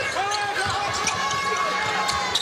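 Arena ambience during live college basketball play: steady crowd murmur with a ball being dribbled on the hardwood court.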